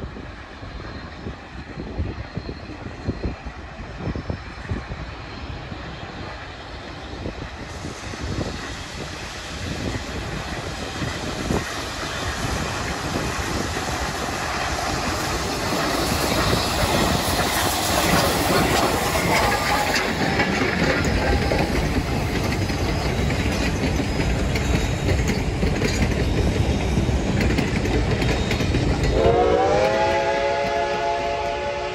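Reading & Northern 2102, a 4-8-4 steam locomotive, approaching and passing close by, its sound growing steadily louder to a peak as the engine goes past about halfway in, then its passenger coaches rolling by with a clickety-clack of wheels. Near the end a chime steam whistle opens, its several notes sliding up in pitch and then holding.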